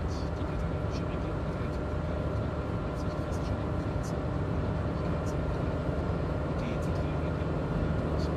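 Steady engine and tyre rumble heard inside a moving car's cabin, with light ticks now and then.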